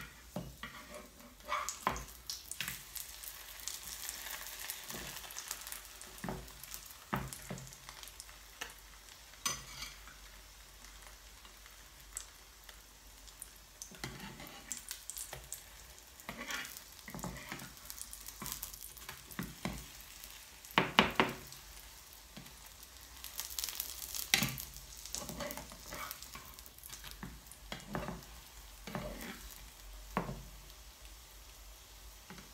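A pancake frying in a pan on an electric hob, a thin sizzle under repeated short scrapes and clicks of a spatula against the pan as the pancake is lifted and folded. The loudest knocks come about two-thirds of the way through.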